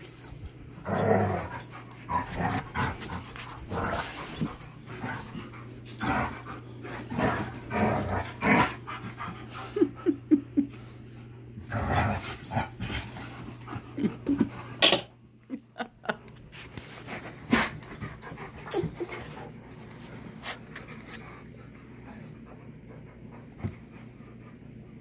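An Alaskan Malamute and a Blue Bay Shepherd play-wrestling: irregular bursts of dog vocalising and scuffling, with a few short pitched cries about ten seconds in and a sharp loud burst near fifteen seconds. The play grows quieter over the last several seconds.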